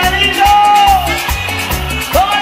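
Live band music in an instrumental passage: a steady bass beat under a lead melody that holds one long note and lets it slide down about a second in.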